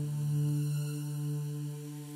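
Closing held low note of a new-age music track: one steady drone with overtones, slowly fading.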